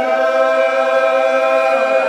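Congregation singing a lined-out hymn unaccompanied, in the slow, drawn-out Old Regular Baptist style, holding one long note that shifts near the end.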